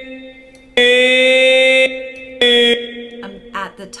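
Melodyne auditioning a sung note while its pitch is edited: a steady, buzzy held vocal tone that switches on and off abruptly, once for about a second and then as a short blip.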